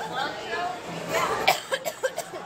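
Indistinct voices, with a few short sharp sounds, including a cough about one and a half seconds in.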